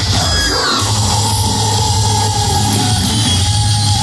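Heavy rock band playing live through a large hall's PA system, loud and dense with a strong, steady bass. A sliding note comes about half a second in, then a held tone carries through.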